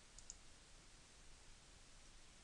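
Two faint clicks in quick succession, a computer mouse button being clicked, over a faint steady hiss.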